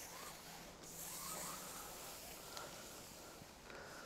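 Faint rustling and rubbing over a quiet background hiss.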